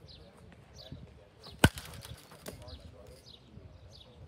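A baseball bat cracks against a pitched ball once, sharply and loudly, with a brief ring, and a fainter knock follows about a second later. Birds chirp in the background.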